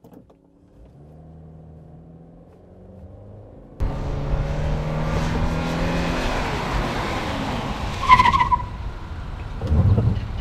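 A Subaru Forester's flat-four engine and CVT pulling steadily, heard from inside the cabin. Then, from outside, the car drives with tyre and wind noise, and its note falls as the EyeSight automatic emergency braking slows it towards the obstacle. A brief high-pitched squeal comes about eight seconds in.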